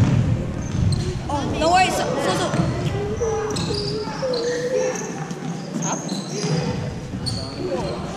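A basketball bouncing on a hardwood gym floor during a game, the knocks echoing in the large hall among players' shouts.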